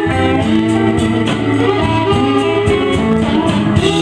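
A live band playing an instrumental passage with guitar to the fore, over bass and a steady beat, with no singing.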